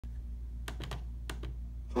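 Five short clicks from a laptop's controls, in two quick groups, over a steady low hum.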